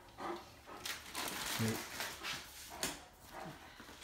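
Great Dane panting close by: a run of short noisy breaths, with a brief low voice sound about one and a half seconds in.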